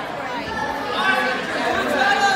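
Spectators' overlapping voices, with several people talking at once.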